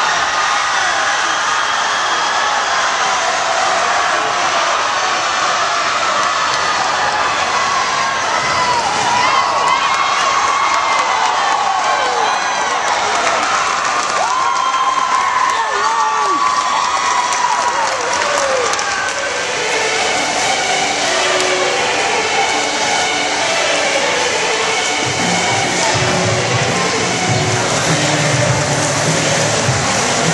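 Spectator crowd at a swim meet cheering and shouting continuously during a relay race. In the last third, music over the PA comes in under the crowd noise.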